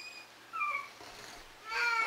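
A pet's short, high-pitched cry about half a second in, followed by another brief pitched sound near the end.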